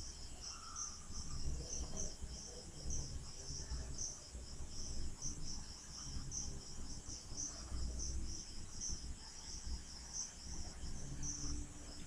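Faint insect chirping in the background, a steady run of short high chirps about two or three a second, over a low room rumble.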